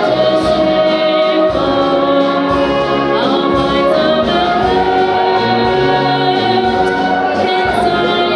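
A brass and wind band with tubas, clarinets and drums playing live while a woman sings the lead into a microphone.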